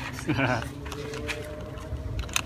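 A brief snatch of voice over a faint steady low hum, with a few light clicks.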